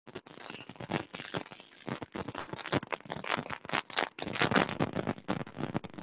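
Garbled, crackling call audio over a bad internet connection: a dense run of scratchy noise bursts that starts suddenly out of silence.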